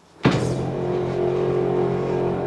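Electric TV lift motor starting about a quarter second in and running steadily with a low, even hum as it lowers the TV into its cabinet.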